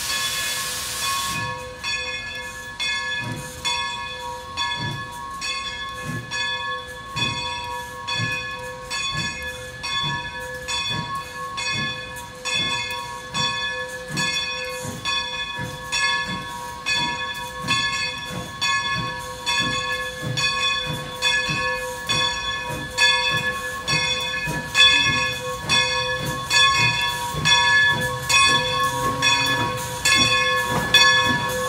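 Steam locomotive No. 40 of the New Hope & Ivyland rolling slowly in with its bell ringing steadily in regular strokes. A hiss of venting steam stops about a second and a half in, and low exhaust chuffs grow louder near the end as the engine draws close.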